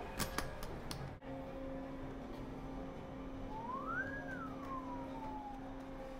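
Guitar case latches snapping open: a few sharp clicks within the first second. Over a steady low hum, a single wail then rises and falls once about four seconds in.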